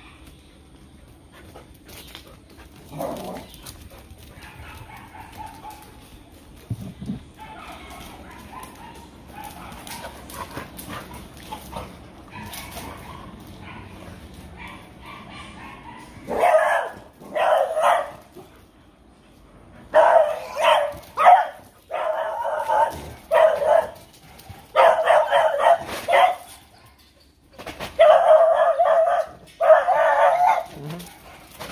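Dogs barking in play: after a quieter first half, a run of loud, repeated barks and yips starts about halfway through and goes on in bursts with short gaps.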